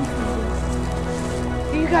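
Background music with steady held chords; a voice begins near the end.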